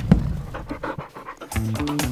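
A dog panting quickly in short, even breaths while the music drops away. The music comes back in about three-quarters of the way through.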